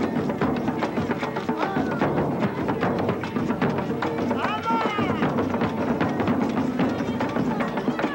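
Carnival comparsa drum ensemble playing a fast, dense, driving rhythm, with voices over it. A brief high sound rises and falls about halfway through.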